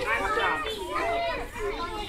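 Young children's voices chattering over one another, with a laugh near the end.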